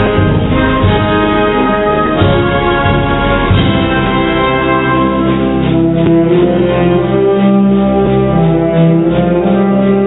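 Spanish wind band (banda de música) playing a Holy Week processional march: brass-led sustained chords over held low bass notes. About halfway through, a quick steady pulse joins them.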